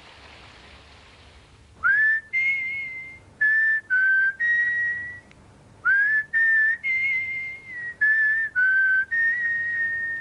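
A tune whistled in a run of clear held notes that step up and down in pitch, starting about two seconds in after a soft hiss.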